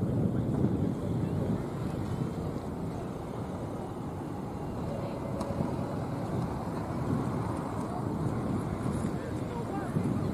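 Wind buffeting an outdoor microphone: a steady low rumble that swells in small gusts, with faint distant voices under it.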